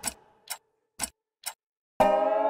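Clock ticking as an edited-in sound effect: four sharp ticks, two a second, with dead silence between them.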